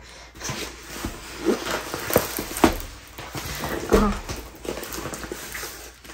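Paper rustling and crinkling with light taps as a rolled diamond-painting canvas in its paper wrap is handled and turned over. A brief voice sound comes about four seconds in.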